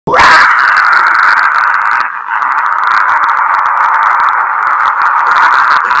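A man screaming into a cupped handheld microphone: one loud, hoarse, unpitched scream, broken briefly just after two seconds in for a breath.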